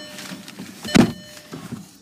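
A single short thump about a second in, inside a car's cabin.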